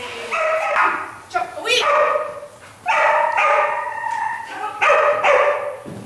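Poodle barking and yipping excitedly in about four high-pitched bouts with short gaps between them.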